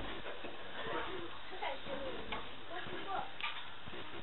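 Puff puff dough balls deep-frying in hot vegetable oil with a steady sizzle. A metal fork turning them clicks lightly against the aluminium pot, and soft voices are heard in the background.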